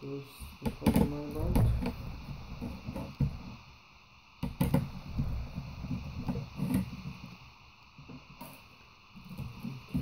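Clicks and knocks of a screwdriver and fingers on a laptop's plastic chassis and motherboard as it is being taken apart, with a few sharper clicks about halfway through and again near the end.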